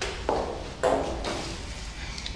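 Two short knocks about half a second apart, the second louder.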